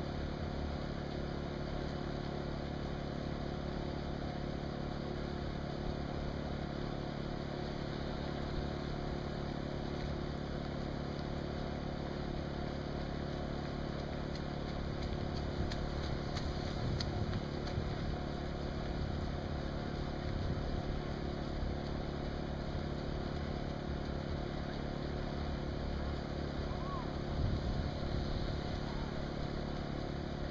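An engine runs steadily at idle with a constant low hum. A car passes behind it about halfway through.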